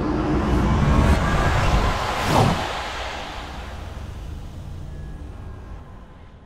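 Logo-animation sound effect: a swelling whoosh over a low rumble, with a quick downward sweep about two seconds in, then slowly fading away.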